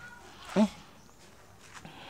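A single short questioning "Eh?" from a person about half a second in, with only faint background otherwise.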